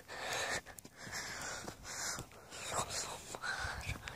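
Footsteps on dry, stony lakebed soil, a series of soft crunching steps with breathy hissing noise in between.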